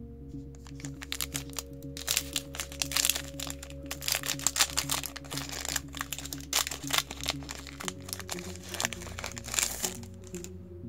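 Yu-Gi-Oh! booster pack's foil wrapper crinkling densely as it is torn open and handled, picking up about two seconds in, over steady background music.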